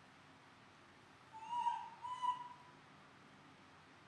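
Baby macaque giving two short, high calls in a row, about a second and a half in.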